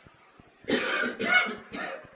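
A person coughing: three harsh coughs in quick succession, starting under a second in and ending just before the end.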